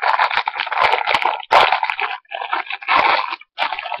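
Crinkly packaging being handled, rustling and crackling loudly in several bursts with short breaks, as the next bracelet is taken out.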